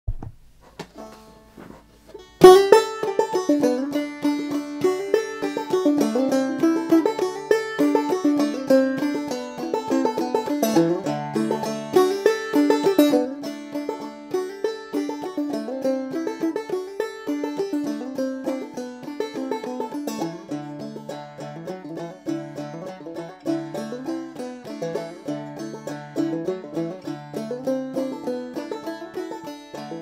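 Five-string banjo played clawhammer style in Double D tuning (aDADE), an old-time fiddle tune in the key of D, with a steady, driving rhythm. The playing starts about two and a half seconds in.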